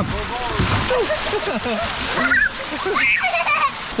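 Water splashing as a child comes off the end of a water slide into the pool, with a loud rush of water about the first half-second, under the chatter of people around the pool.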